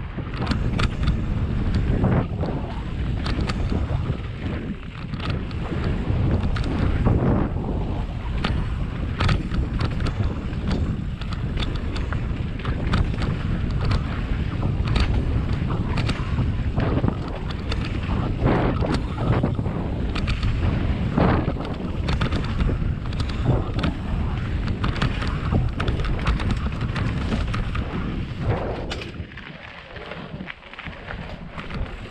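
Wind buffeting the microphone of a camera on a mountain bike descending a dirt trail, over the rumble of knobby tyres on dirt and frequent rattles and clicks from the bike jolting over bumps. The noise eases off near the end as the bike slows.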